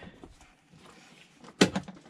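Quiet handling, then one sharp plastic click about one and a half seconds in, followed by a couple of fainter ticks: hands taking hold of the Honda Pioneer 700's plastic air filter housing and intake hose.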